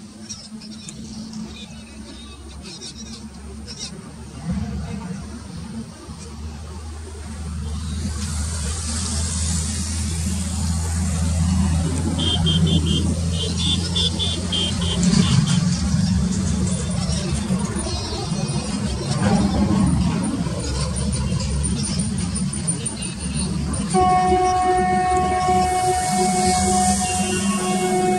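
Electric locomotive hauling a long passenger express train as it approaches: a low rumble with wheel-and-rail hiss that grows steadily louder. Background music comes in about two seconds before the end.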